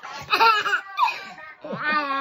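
A baby and a toddler laughing hard in short bursts, the loudest about half a second in.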